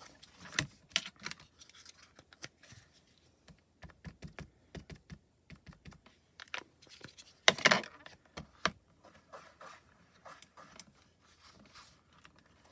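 Irregular light taps and clicks of small plastic stamping tools being handled: brown ink dabbed onto a clear acrylic stamp and the hinged door of a stamp-positioning platform worked, with one louder clatter about seven and a half seconds in.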